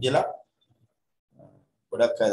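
A man's voice speaking, which breaks off about half a second in. A pause follows with one brief faint low sound, and the voice starts speaking again just at the end.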